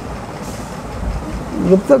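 A steady low rumble of background noise, with a man's voice starting near the end.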